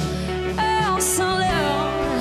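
Live funk-soul band music with a woman singing lead, her voice gliding between held notes over a steady bass line, with a brief hiss about a second in.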